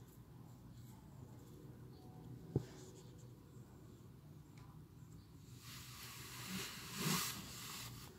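Faint papery rustling and scratching for about two seconds near the end, loudest just before it stops, after a single sharp click about two and a half seconds in, over a low steady hum.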